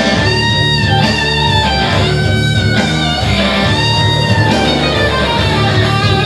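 Electric-guitar-led music, playing a melody of long held notes, each lasting about a second, over a steady, full low accompaniment.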